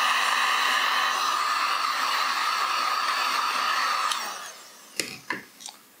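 Heat gun blowing a steady rush of hot air with a low hum. About four seconds in it is switched off and its fan winds down, the hum falling in pitch. A couple of light clicks follow.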